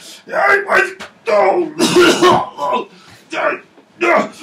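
A man's voice in a string of short wordless grunts and cries, as in a scuffle.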